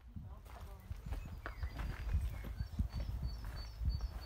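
Outdoor sound of knocking steps over a low rumble on the microphone. From about halfway, a bird's short high call repeats about twice a second.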